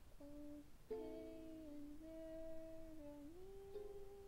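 A woman humming the melody softly, holding notes that step between pitches and rise near the end, with a single strummed chord on a ukulele-like string instrument about a second in.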